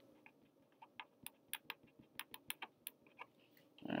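Faint, irregular small clicks and ticks of a paper sheet being handled, slid and turned on a desk.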